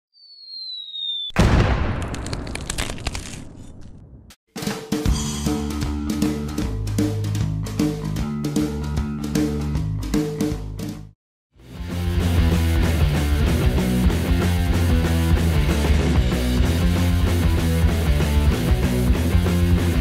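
Intro sound track: a short falling whistle, then a loud hit that rings out for a few seconds. Rock music with drums, bass and guitar follows, breaks off briefly, then starts again fuller.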